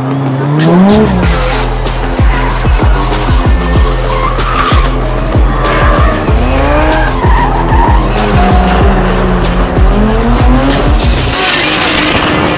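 Drift cars revving hard, the engine pitch rising in several pulls, with tyres squealing as the cars slide, mixed over background music.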